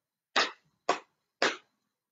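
Three hand claps, about half a second apart.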